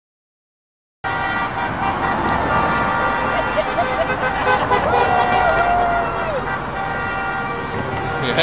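Silence for about a second, then street traffic with car horns honking and voices mixed in. One horn is held for just over a second, about five seconds in.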